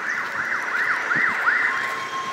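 An electronic siren sounding a rapid rising-and-falling yelp, about three sweeps a second, which changes to a steady tone near the end.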